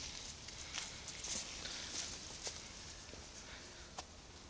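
Faint crackle and rustle of a mountain bike's tyres rolling over dry leaves and twigs on a dirt trail, with scattered small clicks, growing quieter as the bike moves away.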